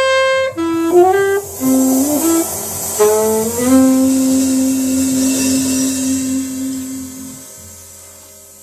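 Jazz trio of alto saxophone, double bass and drums closing a tune. The alto saxophone plays a short phrase, then holds a long final note that stops about seven seconds in, over a ringing cymbal that fades away.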